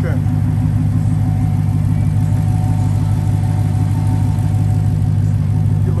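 Dodge Challenger SRT Hellcat's supercharged V8 idling with a steady, deep hum.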